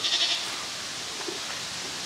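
A short bleat from a farm animal near the start, with a fast wavering pulse, over a steady faint outdoor hiss.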